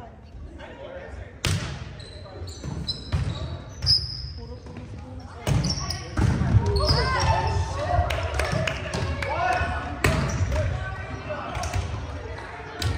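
Indoor volleyball play: sharp hits of the ball, one about a second and a half in and a quick run of them from about five seconds on, with players' shouts, all echoing in a large gymnasium.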